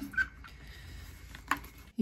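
Faint trickle of two-stroke fuel draining from a chainsaw tank into a glass jar, with a single sharp click about a second and a half in.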